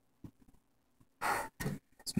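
A faint click, then a person drawing a quick breath in two short pulls, just before speaking.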